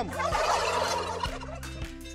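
A flock of domestic white turkeys gobbling together in a loud chorus. It is densest in the first second, then thins and fades.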